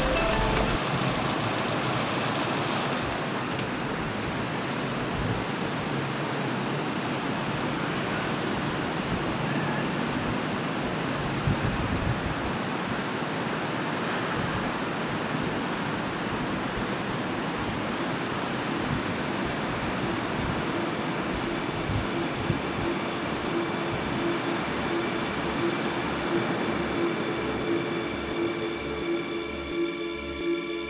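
Steady rushing road and engine noise of a car being driven. Near the end a low, evenly pulsing beat and a held tone of music come in.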